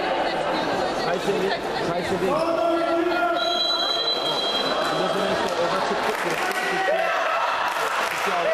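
Players and spectators shouting and calling to each other during a handball match, echoing in a large sports hall. A steady high tone sounds for about two seconds starting a little past the middle.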